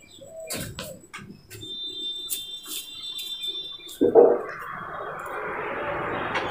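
Marker pen drawing on a whiteboard: a series of sharp ticks and short high squeaks as the lines are stroked in. At about four seconds a thud, followed by a steady rushing noise.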